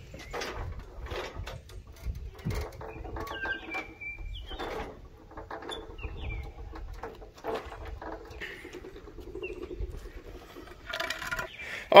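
Irregular clicks and knocks from a hand-cranked material lift and the truck cab being let down onto wooden blocks, with a few faint bird chirps.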